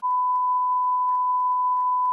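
Steady, pure, mid-pitched beep held on one note: the bars-and-tone reference test tone that goes with television colour bars.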